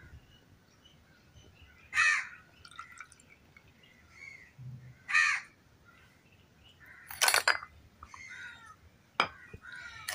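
A crow cawing several times, with loud caws about two, five and seven seconds in and fainter calls between them.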